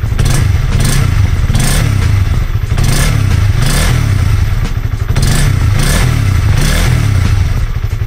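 Honda CB150R's single-cylinder engine revved in repeated throttle blips, its pitch rising and falling between them. The engine has run on 100% cooking oil in place of engine oil for over five months, and the owner finds it still smooth.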